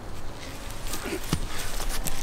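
Faint rustling of straw mulch and soil underfoot over a low outdoor background, with one soft knock about a second and a half in and a brief murmur of a voice just before it.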